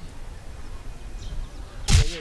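Low background rumble and hiss, then one sudden loud bang near the end with a brief ringing tail.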